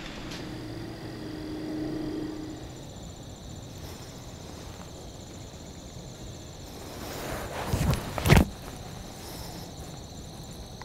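Electronic game caller playing buck grunts: a low steady call for the first couple of seconds, then a short run of loud low grunts about eight seconds in, over a steady insect drone.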